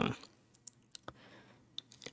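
A voice trails off right at the start, then a handful of faint, scattered clicks, about five in under two seconds.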